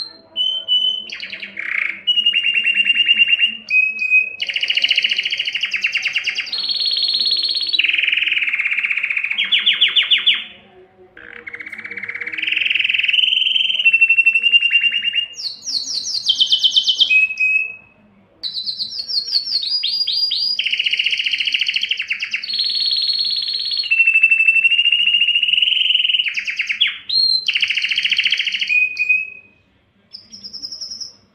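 Domestic canary singing: a long song of rolling trills and rapid repeated notes, each phrase held a second or two before jumping to a new pitch, with brief pauses about 11 and 18 seconds in.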